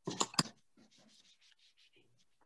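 Hands handling a round wooden craft board and materials on a tabletop: a brief clatter with two sharp knocks, then light, quick rubbing strokes, about six a second.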